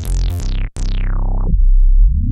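Synth bass patch on a Korg Krome workstation, played as short notes on the keys. Each note is bright at the start and closes down in a falling filter sweep, with one longer note dulling away and a deep low note near the end, while the filter cutoff and resonance are worked from the panel knobs.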